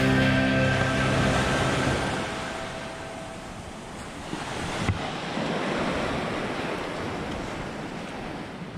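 Background guitar music fades out over the first two or three seconds, leaving small waves washing onto a sandy shore, the surf swelling again about halfway through.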